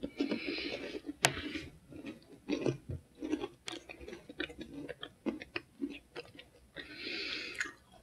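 A person chewing a mouthful of hard Nature Valley granola cup with pecans, with many short, irregular crunches and a couple of sharper cracks.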